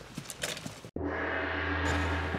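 A steady ringing tone made of several held pitches. It starts abruptly just under a second in, right after a split-second dropout.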